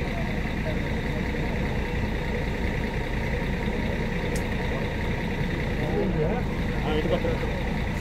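A steady engine rumble runs throughout, with faint voices in the background and a single click about halfway through.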